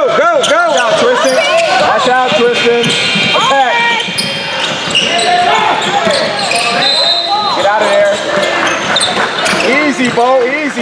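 Basketball shoes squeaking on a hardwood gym floor in short arching chirps, bunched at the start, about three and a half seconds in and near the end, with a basketball bouncing as players run a possession.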